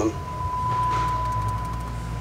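A steady 1 kHz test tone at 0 dB from a setup disc, playing through the car stereo's speakers as the signal for setting the amplifier gains. It drops in level near the end.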